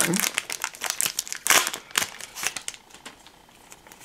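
Foil Pokémon booster-pack wrapper crinkling as it is torn open and pulled apart by hand: a dense run of crackles, loudest in the first couple of seconds, thinning out near the end.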